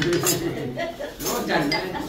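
Metal spoon clinking against a small ceramic bowl as it is scraped out and set down, over men's voices.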